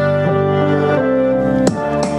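A song playing loudly through the Nylavee SK400 USB-powered computer speakers during a sound-quality test, with sustained notes that change pitch every half second or so.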